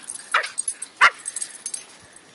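Brussels Griffons play-fighting, one giving two short, sharp yaps, the second louder, about a third of a second and a second in, followed by a few fainter short sounds.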